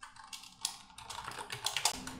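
Typing on a computer keyboard: a quick, irregular run of about a dozen keystroke clicks as a short word is typed.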